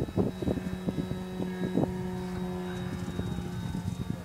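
Radio-controlled flying-wing model plane's motor and propeller droning overhead at one steady pitch. A few short thumps sound in the first two seconds.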